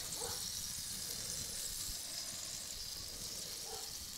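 A steady, faint hiss, high in pitch, with no pops or knocks.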